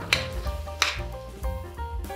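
Background music with steady notes, and a metal spoon knocking against a stainless steel frying pan twice while tomato sauce and cream are stirred into pork strips.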